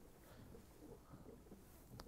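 Near silence: only a faint, even background hiss with no distinct sound.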